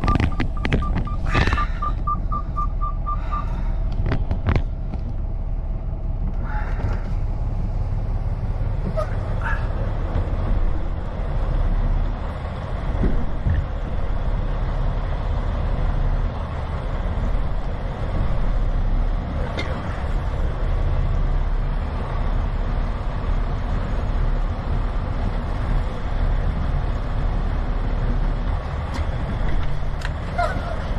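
Semi-truck diesel engine running with a steady low rumble as the tractor eases the trailer to slide its tandem axles. A rapid beeping warning chime sounds for the first three seconds or so, with a few sharp clicks early on.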